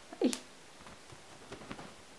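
Blue British Shorthair kitten giving one short, falling mew near the start, with a sharp tap just after it. A few faint taps follow during play with a feather toy.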